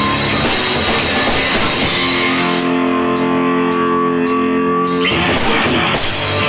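Electric bass guitar and drum kit playing loud rock live. About two seconds in, the cymbal wash drops away under a held, ringing bass chord with a few sparse drum hits. The full band comes crashing back in about a second before the end.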